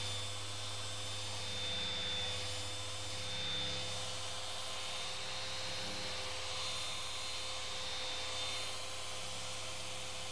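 Electric dual-action car polishers running steadily while compounding paint, a constant whine over a low hum.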